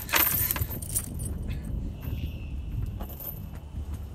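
Metallic jangling and clinking for about the first second, fading into a low rumble with a faint steady high tone.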